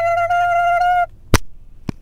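A person's high, steady vocal note held for about a second, right after saying bye-bye, then two sharp clicks.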